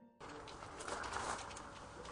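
A dove cooing about a second in, over steady background hiss, just after a short music ending cuts off.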